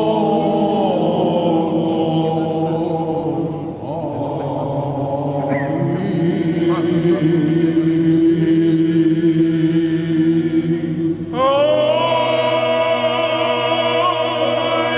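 A choir sings Byzantine chant in the grave mode (varys), with several voices moving over a sustained low drone, the ison. About eleven seconds in, the voices pause briefly, then enter on a new phrase with a sliding rise in pitch.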